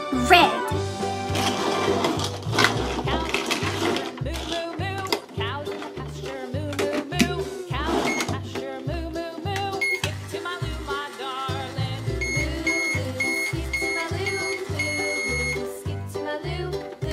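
Upbeat background music with a steady beat. After the buttons are pressed, the toy microwave's electronic beeping starts about three-quarters of the way in: a rapid run of high beeps that stops just before the end.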